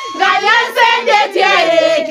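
Several people singing together in high voices, the lines overlapping and rising and falling.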